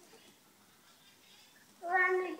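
Faint room tone, then near the end a short high-pitched vocal call, loud against the quiet before it.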